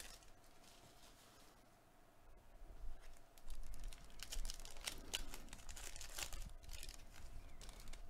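Foil wrapper of a 2021 Panini Contenders football card pack crinkling as it is torn open and handled, a run of quick, faint crackles that starts about three seconds in.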